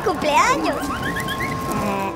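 Wordless comic voice cries that slide down in pitch, then climb in short rising steps, over a steady held tone.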